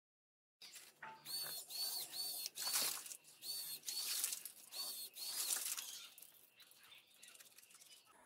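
Tap water pouring onto cupped hands and splashing in uneven bursts. It starts about half a second in and thins out over the last couple of seconds as the hands are drawn away. A high chirp, like a bird, repeats about two and a half times a second through the first half.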